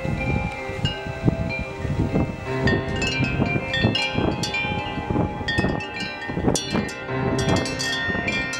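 A tubular wind chime, its metal tubes struck over and over by the wooden striker, ringing in many irregular, overlapping strikes.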